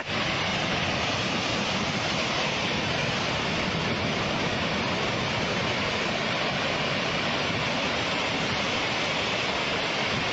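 A landslide: rock and earth pouring down a mountainside, heard as a steady rushing noise that keeps an even level, with no separate impacts standing out.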